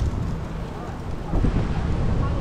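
Wind rumbling on the microphone over outdoor city ambience, with faint voices.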